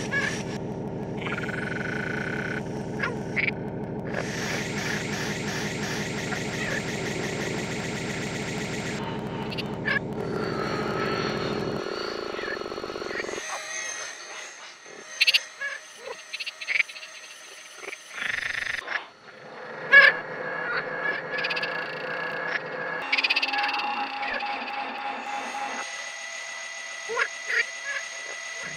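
Frog calls reworked with Kyma electronic sound processing into an electroacoustic composition. For about the first twelve seconds a dense, rapidly pulsing low chorus fills the sound; it then drops out, leaving sparse high held tones, scattered clicks and short calls.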